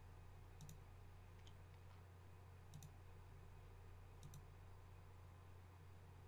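A few faint computer mouse clicks, mostly in quick pairs, over near silence and a low steady hum.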